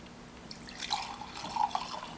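Denatured alcohol pouring from a metal can into a glass mason jar. The liquid splashes and trickles into the glass from about half a second in until just before the end.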